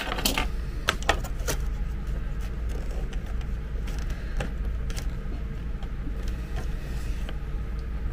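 Small clicks and rattles from handling a mains cord and a black plastic charger case: several sharp clicks in the first second and a half, then softer handling noises. A steady low hum runs underneath.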